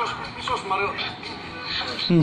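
A vlog playing through a smartphone's small speaker: voices talking over background music.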